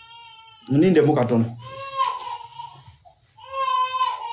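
A small child crying in long, high-pitched wails, two or three drawn-out cries. A man's voice breaks in briefly about a second in.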